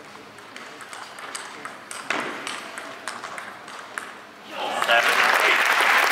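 Table tennis rally: the ball clicks sharply off the bats and table, stroke after stroke. About four and a half seconds in, the arena crowd starts loud applause and cheering as the point ends.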